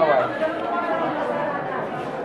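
Several people talking at once, their voices overlapping in an indoor room.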